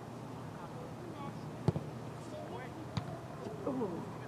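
Two sharp thuds of a soccer ball being kicked, the first and louder one just under two seconds in, the second about a second later, with distant shouts of players in the background.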